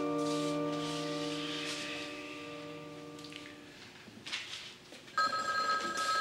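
A held orchestral chord fading away over the first few seconds, then a telephone starts ringing about five seconds in.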